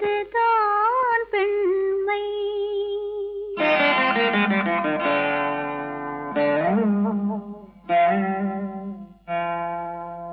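An old Tamil film song in a slow, mournful style. A woman's voice holds a wavering melodic line for about three seconds. Then an orchestra with strings swells in, and the passage ends on long held notes.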